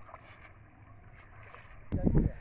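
Faint sloshing and splashing of shallow floodwater as people wade through a waterlogged paddy field and lift soaked bundles of cut rice, over a low steady rumble.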